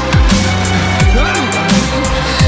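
Electronic action background score with a driving beat and deep bass notes that slide sharply down in pitch about twice a second.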